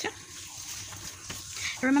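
Faint handling of thin green paper being cut with scissors, with a couple of light clicks; a voice starts speaking near the end.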